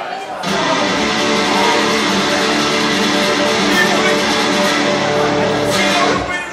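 Amplified acoustic guitar strummed through the PA: a short burst of ringing chords that starts about half a second in and is cut off suddenly just before the end.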